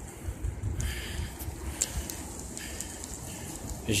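Wind rumbling on the microphone of a camera carried on a moving bicycle, with a couple of faint clicks about a second and a half in.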